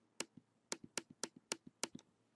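A computer mouse button clicked about six times in quick succession, roughly three times a second. Each click is followed by a softer release click as the zoom-in button of an on-screen image viewer is pressed repeatedly.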